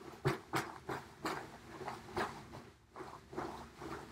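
Rustling of a layered cosplay dress's fabric as it is lifted and handled: a series of short, irregular rustles.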